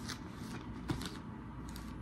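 Paper handling: a notebook lifted and set down on the open pages of a Bible, with short rustles and light taps. The sharpest tap comes just under a second in.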